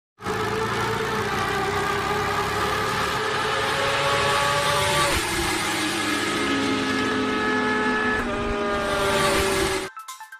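Motorcycle engine sound effect over a rushing whoosh, the engine note stepping down in pitch about five seconds in and again about eight seconds in, then cutting off suddenly near the end.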